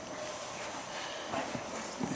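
American Saddlebred horse's hooves stepping softly on straw-covered ground as it backs up, a few faint footfalls in the second half.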